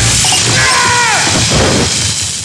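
Electrical short-circuit arc at the top of a utility pole: a sudden, loud crackling burst of sparks, with a falling tone about a second in.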